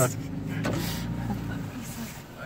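Car engine running low and steady, heard from inside the cabin, with a short rustle about a second in.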